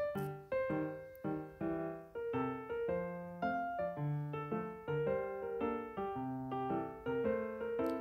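Background piano music: a gentle melody of single notes and chords, each struck and then fading, about two notes a second.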